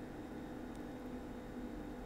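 Quiet room tone: a faint steady hum and hiss with no distinct event.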